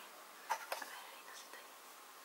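A brief soft whispered voice sound about half a second in, then faint room tone.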